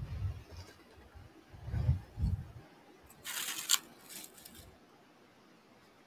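Faint handling and wind noise on a hand-held camera's microphone outdoors. Low rumbles come at the start and again about two seconds in, then a brief rustle a little past halfway.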